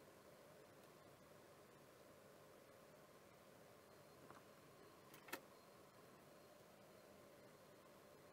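Near silence: faint steady room hum and hiss, with two small clicks about four and five seconds in.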